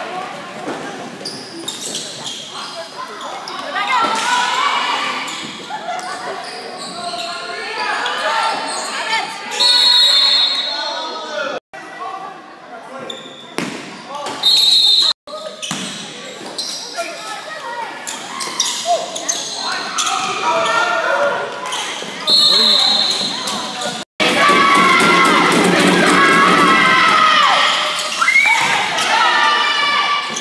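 Basketball game in a gymnasium: a ball being dribbled, players and spectators calling out, and three short, shrill referee whistle blasts spread through the play.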